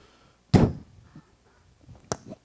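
A single sharp thump about half a second in, a knock or impact that dies away quickly.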